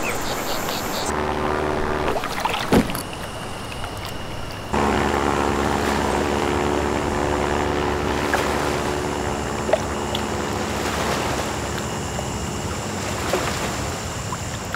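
A small propeller plane's engine drones steadily over a wind-like rush. The drone starts suddenly about five seconds in. Before it there is a shorter engine hum and a single sharp thump.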